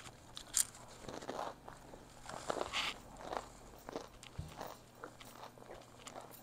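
Close-miked chewing of a crispy fried egg roll: irregular crunches and mouth clicks.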